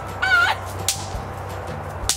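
A brief high vocal exclamation, then a single sharp snap about a second in: a bang snap (snap pop) thrown onto concrete and popping.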